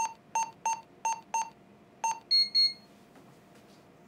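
Wall-mounted home security keypad beeping as buttons are pressed: six short beeps of the same pitch, one per key, then a quick double beep at a higher pitch.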